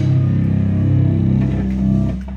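Live rock band's amplified electric guitars holding a final chord and letting it ring after the drums stop, closing out a song.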